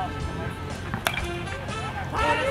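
Background music, with a single sharp crack about a second in: a baseball bat hitting a pitched ball, which goes foul.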